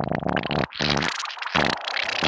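Cartoon fart sound effect, a long sputtering run of several bursts, standing for the baby pooping in her nappy.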